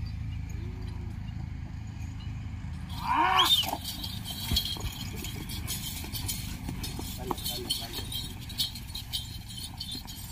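A man's loud, rising call about three seconds in, urging on a pair of bulls yoked to a stone sledge. It is followed by a busy run of clattering hoofbeats and knocks as the bulls drag the stone, with short shouts from the men running alongside.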